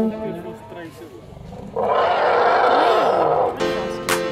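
An African elephant trumpeting: one loud, harsh blast of nearly two seconds starting about two seconds in. Background music fades out before it, and new music begins just before the end.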